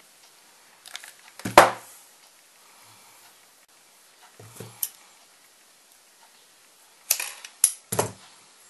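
Handling noises at a craft table as a hot glue gun and a silk cord are used: a few sharp clicks and knocks. The loudest comes about a second and a half in, a couple of softer ones fall near the middle, and a quick cluster comes near the end.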